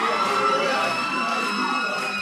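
A cappella choir singing in Swahili, with a long high note held over the lower voices.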